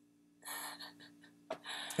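A short, soft breath from a person about half a second in, with a small click and another soft breath near the end, over a faint steady room hum.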